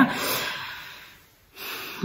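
A woman breathing between sentences: a breathy out-breath fades away over a second or so, then a quick in-breath about a second and a half in.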